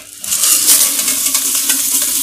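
Coarse crystal salt pouring out of a tipped aluminium pressure cooker into a plastic basket: a steady rushing hiss of grains that starts shortly after the pour begins.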